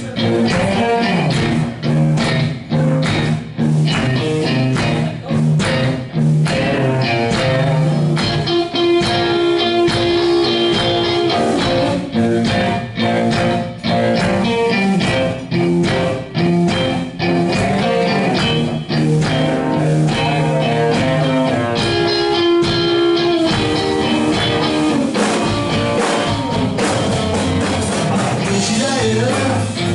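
Live blues-rock band playing: two electric guitars over a drum kit, sustained guitar notes with steady drum strikes.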